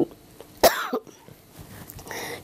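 A woman coughs once, a short sharp cough about two-thirds of a second in.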